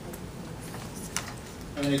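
Scattered light clicks of typing on a computer keyboard, a few irregular taps over a low room hiss.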